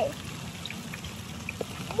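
Faint trickling pond water over a low steady rumble, with a few small soft ticks of water.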